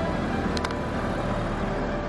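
A steady rumbling noise, strong in the low end, with soft background music under it.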